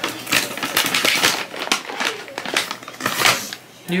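Rapid crinkling and clicking of a dog-treat package being rummaged for another treat. The rustle runs for about three seconds and dies away near the end.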